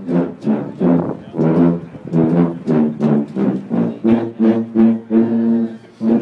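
A sousaphone ensemble playing a low brass tune in short, detached notes, a steady beat of a little over two notes a second.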